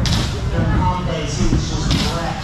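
A competition announcer's voice over the public-address system, the words indistinct.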